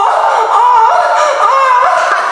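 A man singing one long, high-pitched 'oh', his voice holding each note and stepping up and down in pitch like a melody.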